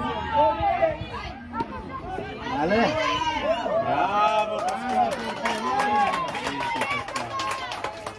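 Overlapping voices of spectators and young players calling out across a football pitch, several at once and none clearly in front. A run of light clicks comes in during the second half.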